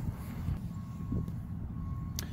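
Low, steady rumble of road traffic, with a couple of soft knocks.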